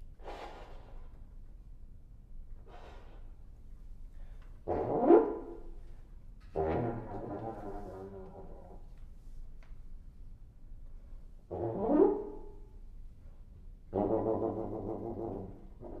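Solo French horn playing separate short phrases with pauses between them: two faint breathy sounds, then notes that swell up to a loud accent about five and twelve seconds in, and two held notes.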